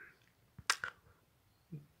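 A quiet pause in which the speaker's mouth makes three short, sharp lip or tongue clicks a little under a second in, followed near the end by a brief low vocal sound as he draws breath to speak again.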